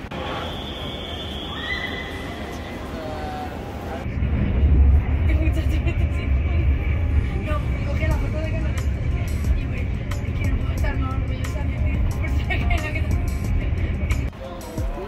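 A passenger train's low running rumble, heard from inside the carriage, with voices in it. It sets in abruptly about four seconds in, after quieter station-platform noise with a high steady tone.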